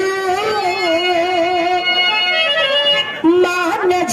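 A woman singing birha, Bhojpuri folk song, through a stage microphone, holding a long wavering note that breaks off about two and a half seconds in and is taken up again near the end.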